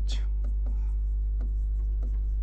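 Chalk writing on a chalkboard: a run of short, faint scratches and taps over a steady low hum.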